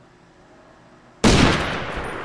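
A sudden loud bang about a second in, dying away slowly over the following second.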